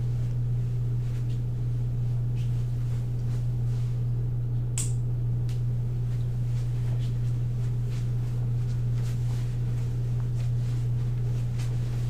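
A steady low hum fills the room, with faint scattered clicks and knocks and one sharper click about five seconds in.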